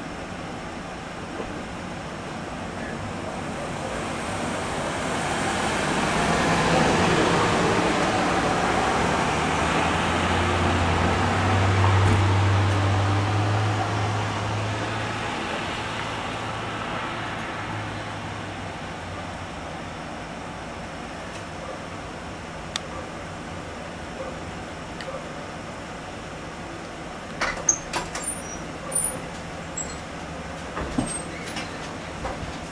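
A motor vehicle passing on the road: its engine and tyre noise swells over several seconds, with a low engine drone at its loudest, and then fades away. A few sharp clicks near the end.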